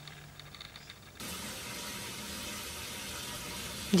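Water running steadily from a tap: an even hiss that starts suddenly about a second in, after a faint quiet stretch.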